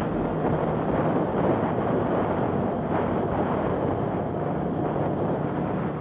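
Wind rushing over an action camera's microphone on a moving motorcycle, with the bike's engine running steadily underneath at road speed.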